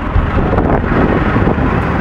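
Engines of military vehicles running as they drive past in a street parade, a loud steady rumble.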